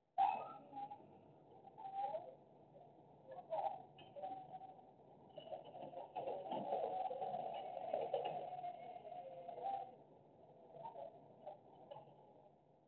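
Pigeons cooing close to the microphone: a series of low, wavering coos, fullest in a longer run through the middle, with a few fainter coos near the end.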